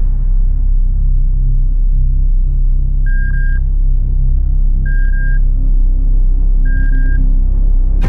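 A loud, deep steady drone with three evenly spaced electronic beeps from a hospital patient monitor, each about half a second long at one pitch, coming a little under two seconds apart.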